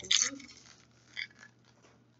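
Plastic crinkling and rustling from a Zuru Mini Brands surprise ball being peeled open by hand: a short burst at the start and a small tick about a second in.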